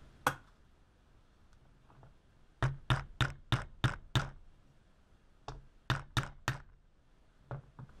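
Sharp knocks in short quick runs, about three a second, with single knocks before and after: a knife's handle pins being tapped in through its freshly glued wooden scales on the workbench.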